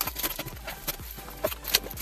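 Paper padded mailer being pulled and torn open by hand: a quick run of crinkling rips and crackles, with a couple of sharper tears.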